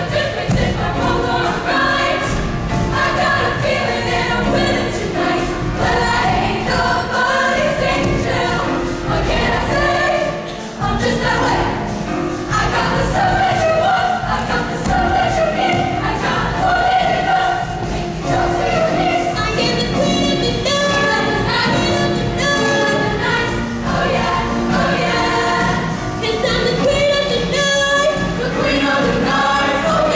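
A large mixed-voice show choir singing a contemporary pop arrangement over instrumental accompaniment with a steady beat.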